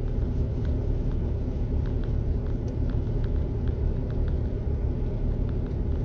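Steady low rumble of a car idling, heard from inside the cabin, with faint scattered ticks.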